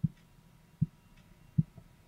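Korotkoff sounds heard through a stethoscope over the arm artery as the blood pressure cuff deflates: three dull thumps about 0.8 s apart, one with each heartbeat.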